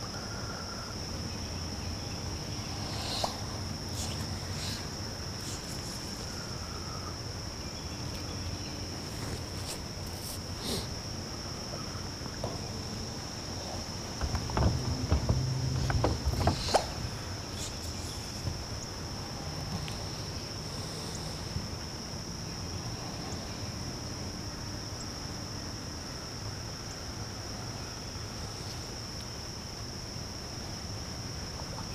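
Insects in the trees keep up a steady high-pitched drone, with a faint low hum beneath. A few light knocks sound, and about halfway through comes a short spell of louder low bumping.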